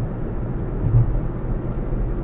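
Steady low rumble of a car driving at highway speed, heard inside the cabin through a windshield-mounted dashcam: tyre and engine noise, with a brief swell about halfway through.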